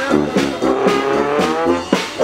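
Live brass music from a small band with a tuba, with one held note sliding slowly upward through the middle.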